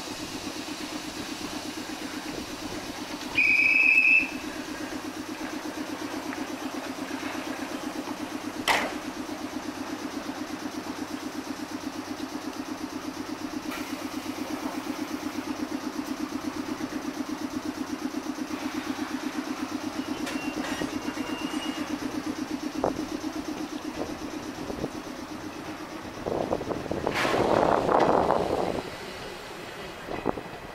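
A standing 719-series electric train humming at the platform, a steady low hum with a fast even pulse. A short high steady tone sounds about three and a half seconds in, a sharp click comes near nine seconds, and a louder rush of noise lasting a couple of seconds comes near the end.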